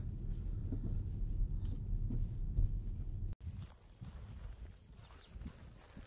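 Steady low rumble inside a running car's cabin with a few small knocks, cutting off abruptly a little over three seconds in; after that, quieter outdoor sound with a few soft thumps.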